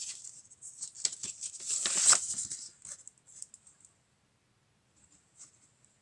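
A vinyl LP being slid out of its paper sleeve and record jacket: a run of rustling and scraping paper and card that stops about three seconds in.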